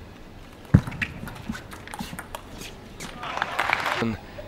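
Hushed indoor arena with light knocks roughly every half second, the first one sharper, typical of a table-tennis ball being bounced before a serve; a faint crowd murmur rises near the end.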